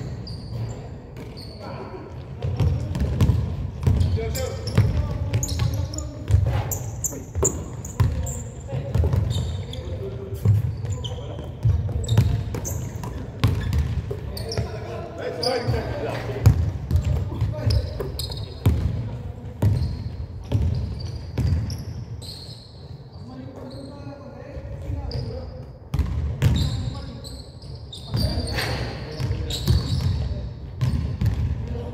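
Basketball bouncing and thudding on a hardwood gym floor in repeated sharp knocks, the sound carrying in a large indoor hall, with players' voices calling out over it.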